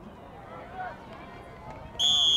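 Faint voices of players and onlookers calling out across a soccer pitch, over a low outdoor background noise.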